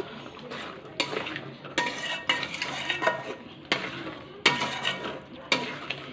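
Steel spoon stirring thick mutton korma gravy in an aluminium kadai, scraping through the curry and clinking against the pan about every second, six times in all.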